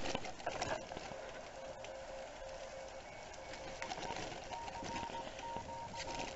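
Bicycle rolling along a gravel path, an even rushing road and wind noise, with faint beeping tones from the handlebar-mounted radio switching on and off in short dashes at two pitches.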